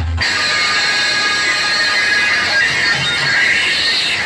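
Loud music blaring from towering stacks of DJ speaker cabinets, continuous after a momentary break at the very start.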